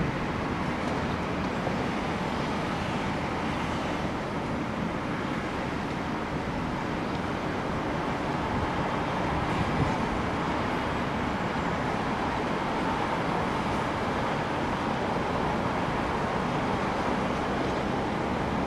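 Steady wash of distant city traffic noise, an even hum with no distinct events standing out.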